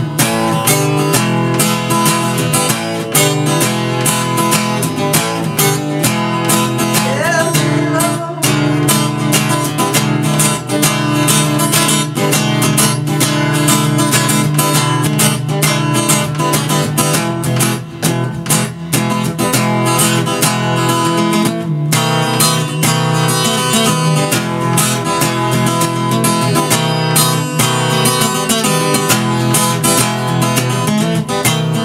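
Acoustic guitar strummed in a steady, rhythmic chord pattern, with no singing over it.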